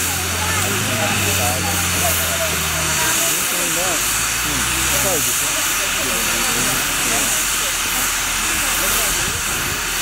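Steam hissing steadily from Western Maryland 734, a 2-8-0 steam locomotive, as it vents steam on the turntable. People are talking in the background, and a low steady hum stops about three seconds in.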